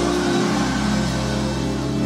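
Background music in a pause between sermon lines: a steady, held chord with a low sustained bass tone underneath.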